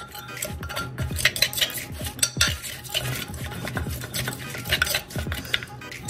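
Wooden pestle pounding and grinding in a clay mortar, a run of irregular knocks and scrapes, crushing the chilli-garlic seasoning with salt and sugar for som tam.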